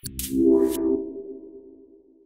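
Short electronic music sting for the closing logo: a swish over a held low chord that swells in the first second and then fades away.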